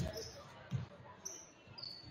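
A basketball bouncing twice on a hardwood gym floor, dull thumps about three-quarters of a second apart: a free-throw shooter's dribbles before the shot, over faint gym voices.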